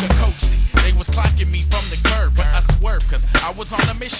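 G-funk gangsta rap track: rapping over a deep, sustained bass line and a steady drum beat.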